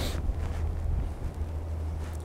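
Wind buffeting the microphone: a steady low rumble with no other distinct sound.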